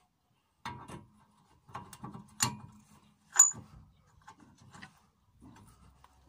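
A series of sharp metal clicks and knocks as a Ford Transit's brake disc and hub are worked onto the stub axle and wheel studs by hand. The loudest knock, about three and a half seconds in, has a short high metallic ring.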